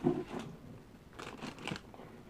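Clear plastic packaging bag crinkling in several short rustles as a bagged lollipop prop is handled and lifted.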